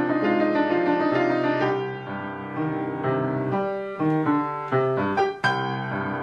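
Instrumental piano music. Sustained chords give way, about two seconds in, to separate notes struck one after another.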